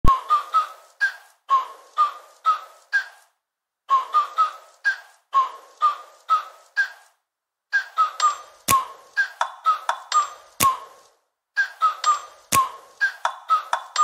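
Short, bright pinging notes in quick groups of three to five, each struck sharply and fading fast, with brief pauses between the groups. A few sharp clicks fall in the second half.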